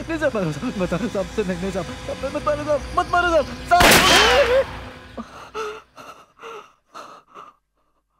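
A man whimpering and crying in terror, then a single revolver shot fired right beside him just before four seconds in, the loudest moment, with a cry over its ringing. A few short gasping sobs follow and die away to silence.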